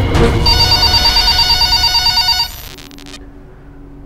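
Jingle music of a TV programme ident turning into an electronic telephone ring: a warbling trill for about two seconds that cuts off suddenly, followed by a quieter held low tone.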